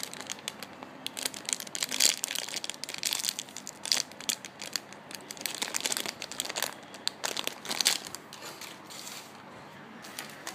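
Clear plastic bag crinkling irregularly as hands squeeze and turn a foam squishy toy sealed inside it; the crackling dies away near the end.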